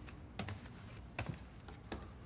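A few light clicks and taps in close pairs, about two-thirds of a second apart, over a quiet room.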